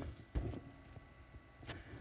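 A pause in speech: faint room tone over a church sound system, with a faint steady high-pitched tone. A single low thump comes about a third of a second in, and there is a faint click near the end.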